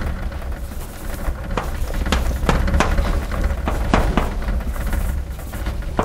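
Chalk on a blackboard: a string of irregular sharp taps and short scrapes as lines and letters are drawn, over a steady low rumble.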